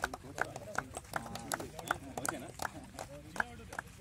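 Sharp clicks in a steady, even beat, close to three a second, over faint voices.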